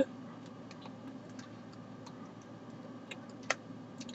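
A few faint, scattered clicks over a steady low hum, with one sharper click about three and a half seconds in. A brief voice sound comes at the very start.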